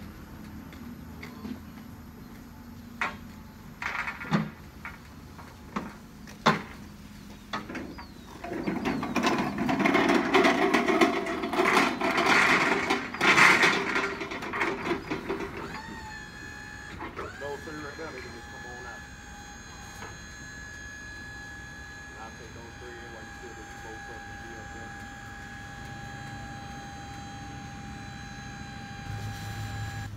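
Clanks and rattles of metal roll cages being handled on a truck's steel liftgate, with a louder clattering stretch in the middle. About halfway through, a steady high electric tone starts and holds.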